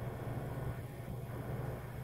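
A steady low hum under faint outdoor background noise, with no distinct event.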